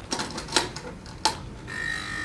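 Metal lid of a Husky tool chest's top compartment unlatched and lifted open, with a few sharp clicks and clunks. Near the end a steady electronic alarm tone starts: the smart toolbox's alarm, set off by the top being opened by someone other than the master user.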